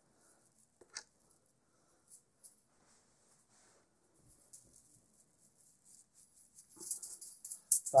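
Juggling balls rattling as they are thrown and caught in one hand: a single click about a second in, then mostly quiet, and near the end a quick run of short, sharp catches.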